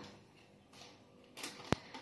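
Faint handling noise of a plastic dehydrator tray being lifted and tilted, with a single sharp click about three-quarters of the way through.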